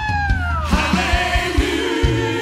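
Live worship band with singers playing a gospel song: a held note slides downward and fades within the first second, over a steady drum beat and bass.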